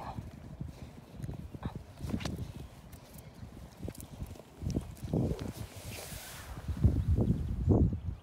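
Border collie puppies scuffling on grass and mouthing a person's hand, heard as irregular soft thumps and scuffs with a brief rustle of fabric, the louder bumps coming about five seconds in and near the end.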